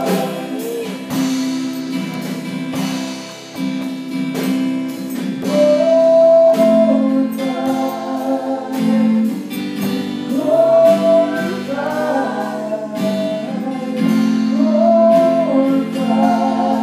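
Live worship song: acoustic guitar strummed in a steady rhythm under sung vocal lines, with a few long held notes.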